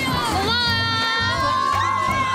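Young women squealing in excitement: one long, high-pitched scream that starts about half a second in and rises slightly in pitch, over background music with a steady beat.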